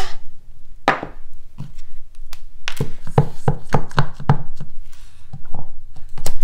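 Clear acrylic stamp block with a photopolymer stamp being tapped onto a black ink pad and pressed down onto cardstock on the desk: a run of irregular light taps and knocks, most closely spaced around the middle.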